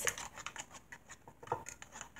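Faint scattered small clicks and taps, with one slightly louder tap about one and a half seconds in.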